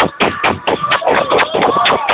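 Loud electronic dance music with a fast steady beat, about four sharp hits a second, with crowd voices mixed in.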